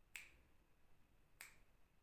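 Two faint finger snaps, about a second and a quarter apart, in a quiet room.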